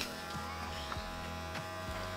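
Electric hair clippers buzzing steadily.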